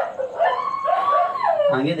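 A high-pitched animal whine: short yelps at the start, then one long call that rises, holds for nearly a second and falls away.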